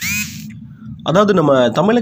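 A short high-pitched gliding sound effect lasting about half a second, of the kind used as a video transition, followed about a second in by a voice speaking.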